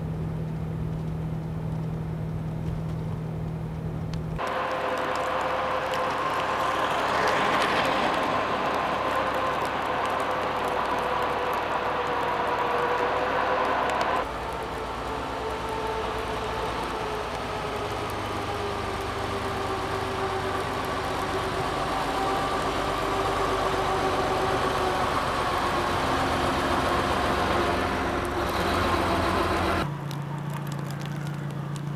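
Vehicle engines running. For the first few seconds there is a steady low engine hum heard from inside a moving car. After an abrupt change, engine sound follows with a slowly drifting pitch, including a tractor-type snowplough working a snowy street. The sound changes suddenly three times.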